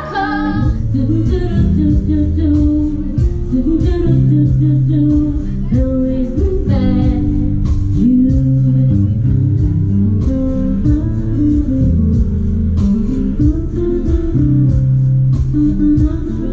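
Live music: a woman singing to her own acoustic guitar, with picked notes over a moving bass line.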